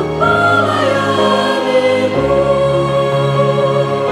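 Mixed SATB choir singing in four-part harmony, holding long sustained chords; the low part moves to a new note about two seconds in.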